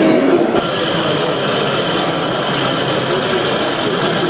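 Small O-scale narrow-gauge model diesel locomotive running along the layout with a steady running sound, over the murmur of voices in an exhibition hall.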